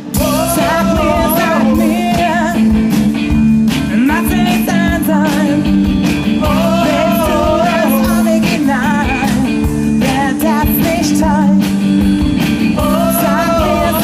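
Live rock band playing: a woman sings phrases with vibrato over electric guitar, bass guitar and a drum kit, amplified through the stage PA.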